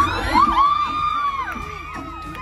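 A dance song playing loudly, with a group of girls whooping and cheering over it; high gliding shrieks ring out in the first second and a half, then ease off.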